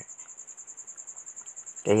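A steady high-pitched pulsing trill of the kind a cricket makes, running through a pause in the talk; a voice begins near the end.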